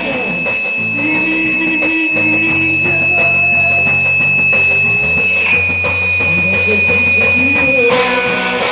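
Live rock band playing: electric guitar over drums, with low sustained notes underneath. A steady high tone rings over the band and drops slightly in pitch about five and a half seconds in.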